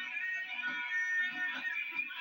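Live rock band playing, a long high note held over regular drum hits, sounding through a television speaker.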